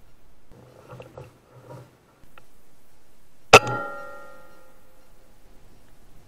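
Air Arms S510 .177 PCP air rifle firing a single shot about three and a half seconds in, a sharp crack followed by a ringing tone that fades over a second or so.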